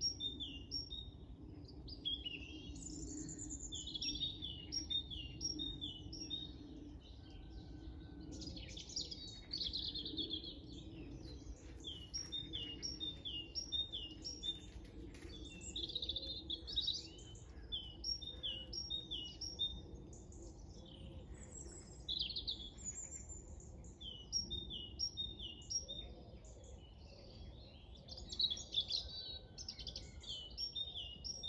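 Small songbirds singing, one repeating a quick two-note phrase over and over while other chirps break in. A faint steady low hum runs underneath.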